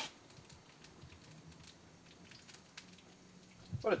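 Faint crackling and popping from a pan of rhubarb, strawberries, port wine and honey cooking on a grill burner, over a faint steady low hum.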